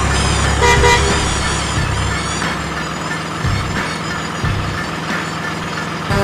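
Truck engine sound, a steady low rumble that eases about halfway through, with a short truck horn toot about two-thirds of a second in.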